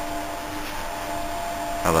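Steady hum and hiss of running machinery, with a faint steady whine over it.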